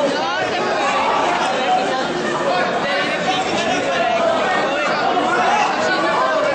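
Many people talking and calling out at once in a large hall: a steady chatter of overlapping voices with no single speaker standing out.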